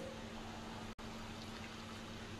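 Faint steady hiss with a low, even electrical hum, cutting out for an instant about a second in.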